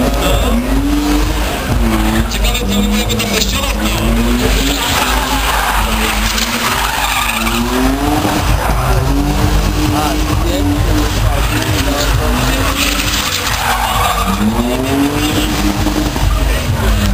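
A car doing a burnout and sliding in circles: its engine revs up and falls back again and again, every second or two, while its spinning tyres squeal and skid.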